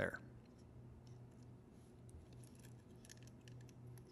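Faint, scattered light clicks and ticks of fingers handling the plastic turnout mechanism and wired decoder board of a model-railway double slip switch, over a low steady hum.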